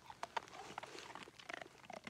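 Belgian Malinois licking and mouthing food from a hand: a faint run of short, irregular clicks and smacks.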